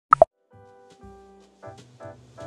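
A quick two-note 'bloop' sound effect, the second note lower than the first, as soft background music starts up and grows fuller near the end.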